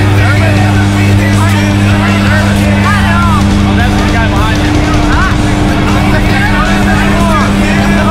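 Steady, loud drone of a propeller jump plane's engines heard from inside the cabin during the climb, a constant low hum with no change in pitch.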